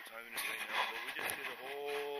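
A man's voice talking, the words unclear, ending on a drawn-out vowel, over a brief rustle.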